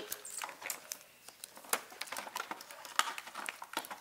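Clear plastic toy packaging crinkling and rustling as it is handled, with irregular small clicks and taps of tiny plastic doll accessories.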